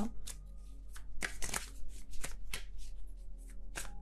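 Tarot cards being shuffled and handled: a string of short, crisp card flicks and slaps in a few quick clusters, over faint background music.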